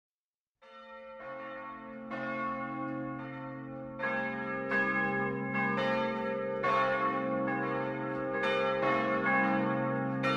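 Bells ringing, a new strike about every second, each ringing on and overlapping the next, growing louder.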